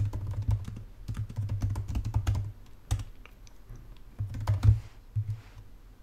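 Typing on a computer keyboard: a quick run of key clicks that thins out about halfway through, then a short burst of keystrokes near the end.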